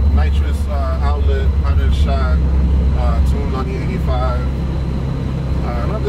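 In-cabin drone of a Honda H23A 2.3-litre four-cylinder engine and road noise, steady as the car cruises, under a man's voice talking.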